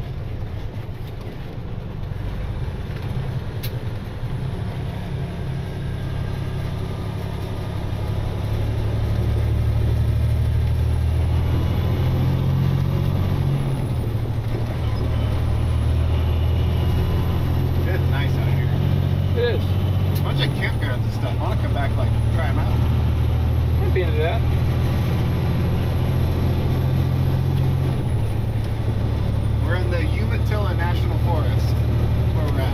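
Heavy wrecker truck's diesel engine pulling up a steep, winding grade, heard from inside the cab. The engine grows louder about eight seconds in, and its pitch shifts a few times after that.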